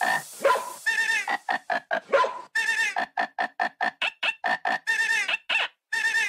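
Electronic dance music breakdown: a pitched sample chopped into short, rapid hits, about four a second, with no bass or kick drum under it.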